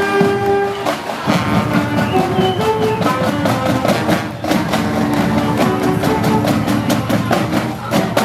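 School marching band playing on the march: saxophones and horns holding sustained notes over a steady beat of percussion hits.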